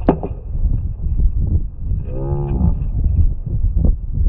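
Slowed-down audio of a sword bout: a steady low rumble of wind on the microphone, a sharp clash of blades right at the start, and about two seconds in a drawn-out, deep-pitched voice sound lasting under a second.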